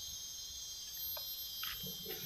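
Steady, high-pitched chirring of insects, likely crickets, in the undergrowth, with a few faint crinkles of a paper note being unfolded by hand about halfway through.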